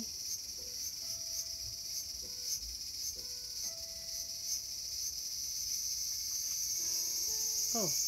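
Cicadas buzzing in a steady high drone, with a faint pulse about twice a second early on, swelling louder near the end.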